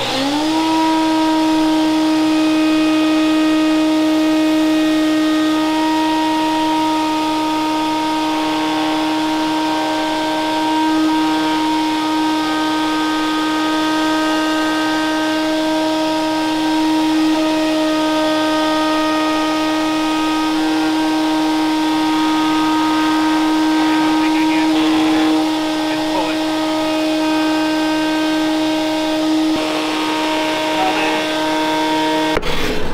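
Router in a Festool CMS router table running at full speed: its whine settles about half a second in as the motor finishes coming up to speed, then holds steady while a workpiece is fed along the bit's bearing against a template for a flush-trim cut.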